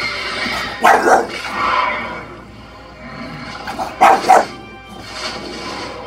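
A bulldog barking in two short loud bouts, about a second in and about four seconds in, over a film soundtrack with music playing from a TV.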